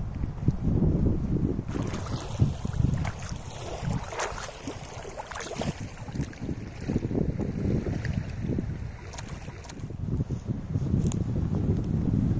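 Gusty wind buffeting the phone's microphone: a low rumble that swells and fades.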